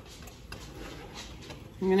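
Silicone spatula stirring thick, rehydrated sloppy joe mix in a skillet: a few faint, soft strokes, then a woman's voice comes in near the end.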